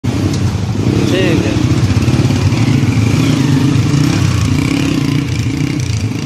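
Honda Deluxe motorcycle's single-cylinder four-stroke engine running steadily, with no revving. A man's voice is heard briefly about a second in.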